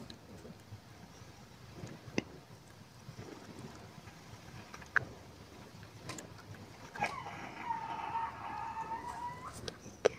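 A wooden spoon stirring curry gravy in a pan, with a couple of sharp taps of the spoon against the pan. Near the end comes a faint wavering high tone, like a distant call, lasting about three seconds.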